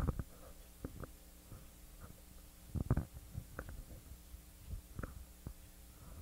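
Room tone with a faint steady hum and scattered soft knocks and clicks at irregular intervals. The loudest thump comes about three seconds in.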